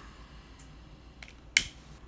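BIC multi-purpose lighter's trigger clicking as it sparks and lights, with one sharp click about a second and a half in and fainter clicks before it.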